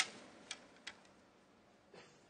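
A few short, sharp clicks of snooker equipment being handled at the table: the loudest at the very start, then two fainter ones within the first second.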